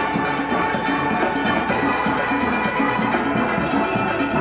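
Steel band playing: many steelpans struck together in a fast, even rhythm.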